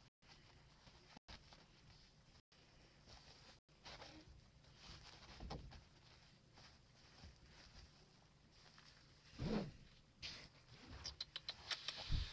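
Mostly near silence, with faint rustling and light taps from a tiny Chihuahua puppy moving about on soft bedding, and one short, louder low sound that rises in pitch about three-quarters of the way through.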